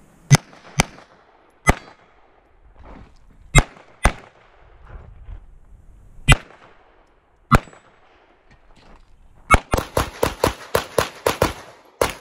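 Pistol shots in a practical shooting stage. There are seven shots, some in quick pairs, with pauses of a second or two between groups, and then a fast string of about ten shots at roughly four a second near the end.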